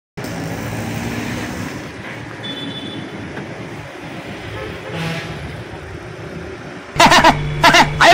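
Road traffic: a steady hum of engines and passing vehicles, with a short high horn toot about two and a half seconds in. Near the end a loud voice cuts in suddenly over music.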